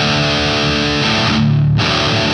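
Jackson electric guitar in drop D tuning, played with heavy distortion: a sustained, ringing power-chord-style strum, then a brief break and a second chord struck near the end.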